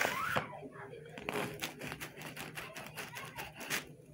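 Knife cutting through a rosca de reyes, its sugary crust crackling and crumbling in many quick, irregular crackles.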